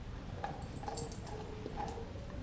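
A Doberman gnawing on a raw beef leg bone, with a few short squeaky sounds and small clicks.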